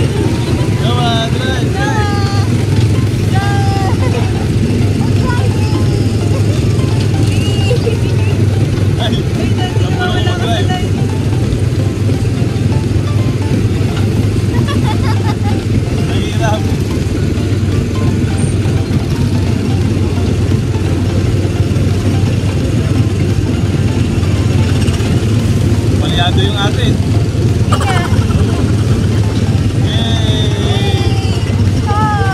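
Small gasoline engine of a theme-park speedway ride car running steadily under way: a loud, rough, even drone heard from the seat, with voices over it.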